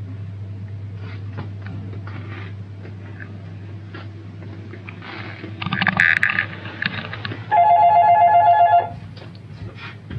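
An electronic telephone ringing once, a warbling two-tone trill of about a second and a half, near the end. Before it, a short clatter about six seconds in, over a steady low hum.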